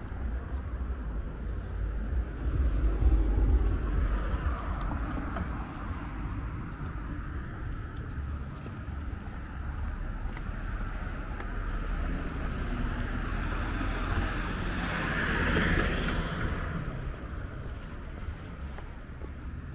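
Street traffic: cars passing on the road with a steady low rumble, heaviest a few seconds in. One car's tyre noise swells and fades near the end.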